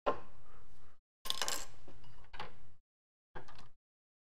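Metal clinks and clatter of a steel lathe chuck and its parts being handled at the lathe, in three short spells. The sharpest clink comes about a second and a half in.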